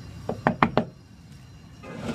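Four quick knocks in under half a second, a short way in.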